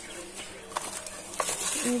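Two light knocks, about a second apart, from kitchen items being handled at the counter, in an otherwise quiet moment.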